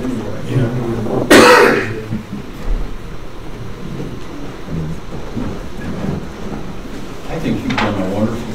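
A single loud cough about a second and a half in, over quiet, indistinct talk in a meeting room.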